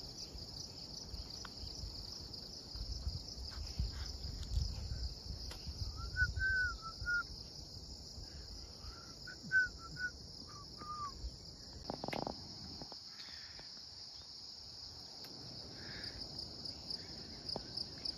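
Steady high-pitched drone of an insect chorus, with a few short bird chirps in two small clusters around the middle and a single brief knock later on.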